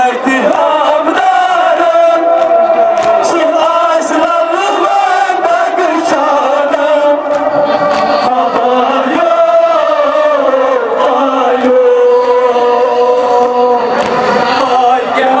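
Men chanting a Kashmiri noha, a Muharram mourning lament, into microphones over a loudspeaker. The voices hold long, drawn-out notes that slowly rise and fall.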